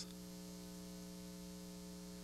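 Faint, steady electrical hum, a low buzz with a stack of even overtones: mains hum on the broadcast audio line.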